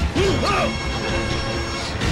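A film punch sound effect, a sharp hit right at the start, followed by a short swooping rise and fall in pitch, over a steady background score.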